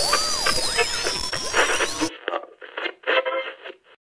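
Electronic glitch sound effect: harsh static laced with sweeping, warbling tones that cuts off abruptly about two seconds in. A thin, muffled sound in short stuttering bursts follows and stops just before the end.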